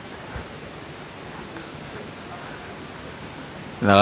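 A steady hiss of background noise with faint murmurs in it, until a man's voice through a handheld microphone starts speaking right at the end.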